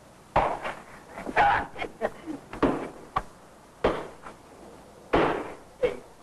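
A scuffle: punches and blows land on a man in a series of about seven heavy thuds at uneven intervals, mixed with short grunts.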